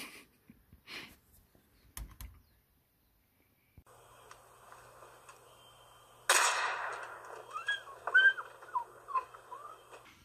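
A few faint clicks, then a single shotgun shot fired at a duck in flight, its report ringing out and dying away over the marsh. Several short rising-and-falling bird calls follow.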